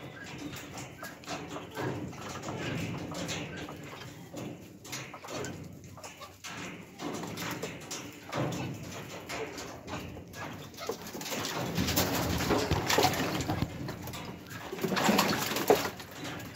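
Mandarin ducks calling among themselves while moving about, with water splashing in a plastic tub near the end as they climb in to bathe.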